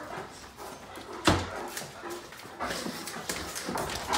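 Great Danes whining and whimpering in excitement, with one loud, sharp knock about a second in.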